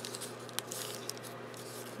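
Faint rustling of paper being handled on a table, with a single small click about half a second in, over a steady low hum.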